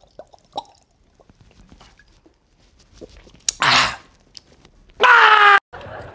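A man gulping hot sauce straight from the bottle, with faint swallowing clicks. A little past halfway comes a loud harsh exhale, then a short, loud wail near the end.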